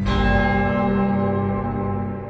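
Suspenseful background score: a struck bell-like tone rings out at the start and slowly fades over a low held drone.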